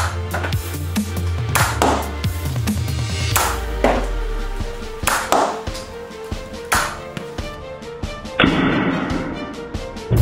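Background music with a sustained low bass line and sharp percussive hits every second or two, getting busier and noisier near the end.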